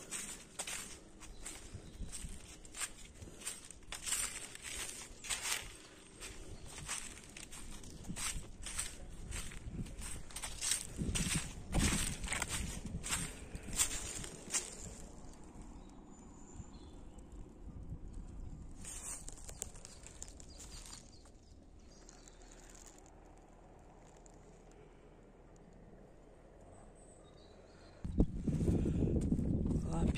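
Footsteps on dry leaves and twigs, a quick run of short rustling steps through the first half, then a quieter stretch with only a few faint sounds. A voice begins near the end.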